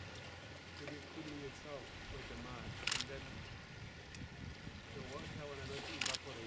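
Quiet voices talking in the background over a steady low hum, with one sharp click about three seconds in.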